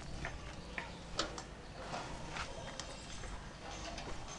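Footsteps on a dirt path, with scattered light knocks at an uneven pace.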